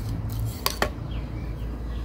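Two quick, sharp clicks close together a little before one second in, a small modelling tool knocking against a hard work surface while clay is worked, over a steady low hum.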